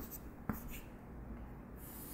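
Chalk drawing lines on a chalkboard. There is a sharp tap at the start and another about half a second in, and a scratchy stroke near the end as a long line is drawn.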